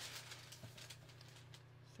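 Near silence with a steady low hum. Faint light rustles and ticks come in the first half second, as a clear plastic ruler is slid over pattern paper.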